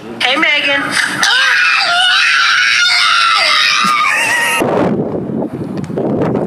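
A person's voice rising into a loud, long, high-pitched scream held for about three seconds, which cuts off suddenly. A steady noisy rush follows near the end.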